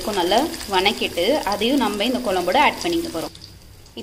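Sliced onions and curry leaves frying in oil in a kadai, a faint sizzle under a louder person's voice. Both break off about three seconds in, leaving a short quieter gap.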